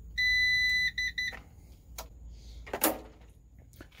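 CyberPower UPS beeping as its power button is pressed to switch it off: one long high-pitched beep, then three quick short beeps. A single click follows about two seconds in, and a brief rustle near three seconds.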